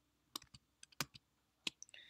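Quick, irregular clicks and taps of a computer mouse and keyboard, about eight in two seconds, some coming in small clusters.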